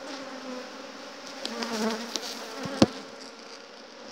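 Honey bees buzzing around an opened hive, with a wavering hum from a bee flying close by about halfway through. A single sharp knock comes a little before the three-second mark.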